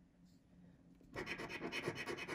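Scratch-off lottery ticket having its coating scraped off in quick, rapid strokes, starting about a second in.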